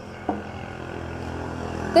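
A light knock about a third of a second in, as the porcelain vase is set on the wooden tabletop, then a steady low vehicle engine hum that grows gradually louder.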